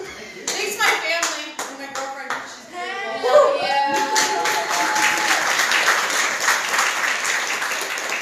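Audience clapping and cheering with voices, scattered claps at first, then a long held 'woo' about four seconds in as the clapping thickens into steady applause.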